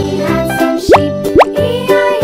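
Upbeat children's background music, with two quick upward-sliding sound effects about half a second apart near the middle.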